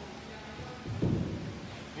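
A football striking a player's hands on a long snap: one dull thud about a second in.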